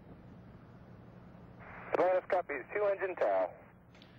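A short radio voice call from mission control's Capcom to the shuttle crew, heard through a narrow, tinny air-to-ground radio channel. It starts about halfway in, after a second and a half of faint steady radio hiss.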